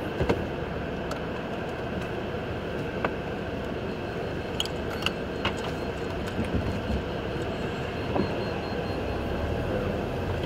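Steady car-cabin noise while driving: tyre and road rumble with the air conditioning blowing, and a few light clicks and taps scattered through it.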